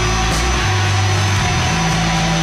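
Live rock band playing a loud passage without vocals: distorted guitars over sustained bass notes that shift in pitch, with a cymbal crash about a third of a second in.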